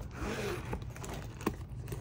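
Metal zipper on a leather handbag being unzipped: a continuous rasping run of the pull along the teeth, with a small click about one and a half seconds in.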